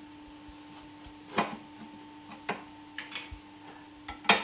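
A metal tin of yacht primer being levered open with an opener: a few sharp metallic clicks, the loudest about a second and a half in.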